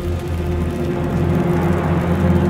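Sustained low drone of a tense film score, with held low tones that swell slightly toward the end.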